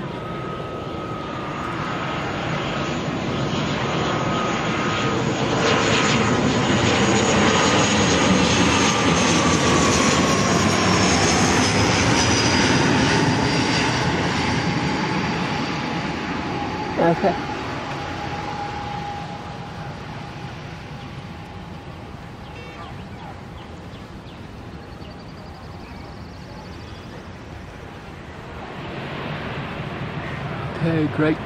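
ATR 72-500 turboprop, two Pratt & Whitney Canada PW127 engines, passing on landing approach. The engine and propeller sound swells to a peak as it comes overhead, with a whine that falls in pitch as it passes, then fades as the aircraft rolls away down the runway. A brief sharp sound cuts in about seventeen seconds in.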